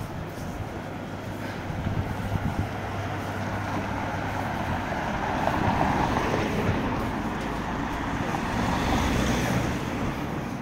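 Cars driving past on a town street: tyre and engine noise swells as they come close, loudest around the middle and again near the end.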